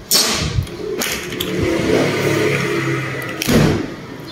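Close-miked eating of a cooked crab: two loud bursts of noise, one just after the start and one near the end, with a steady low hum in between.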